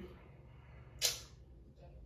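One short sniff about a second in, over faint room tone.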